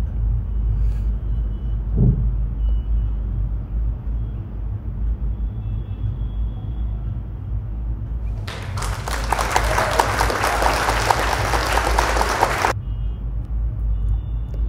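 A steady low background rumble. About eight and a half seconds in, a four-second burst of applause starts, probably a sound effect marking the answer reveal, and cuts off suddenly.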